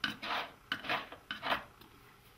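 A metal faucet aerator being unscrewed by hand from a bathroom faucet spout: a few short, gritty rasps as the threads turn, then it comes free.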